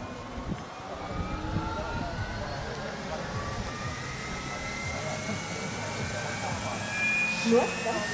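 Scale RC model CH-47 Chinook helicopter spinning up its tandem rotors on the ground: a whine from its rotor drive climbs steadily in pitch, over a low rumble.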